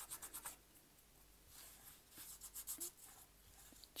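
Stiff paintbrush with little paint on it being pushed and dabbed over a miniature wooden plank floor: faint, quick scratchy bristle strokes on the wood, a short run at the start and another run around the middle.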